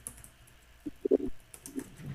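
Computer keyboard being typed on: a few separate keystrokes, mostly in the second half.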